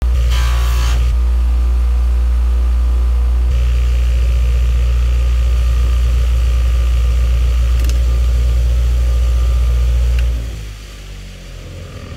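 Bench grinder's electric motor running with a loud, steady low hum while a forged steel golf iron's sole is ground on a 120-grit flap wheel, a hiss of grinding rising over the hum from a few seconds in. About ten seconds in, the hum drops sharply and fades.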